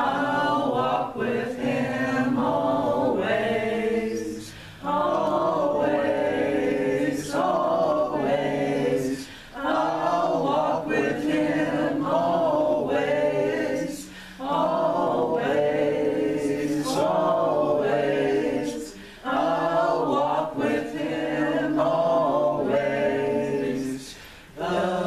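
Voices singing a worship song together, in phrases of about five seconds with short breaks between them.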